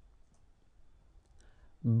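Near silence with a few faint clicks about a second in, then a man starts saying a French word right at the end.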